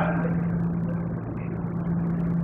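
Steady electrical hum with room noise from the sound system, with no clear event.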